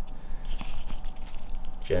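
Faint rustling and scratching of fingers working through loose soil and leaf litter in a clear plastic tub, with a few light ticks.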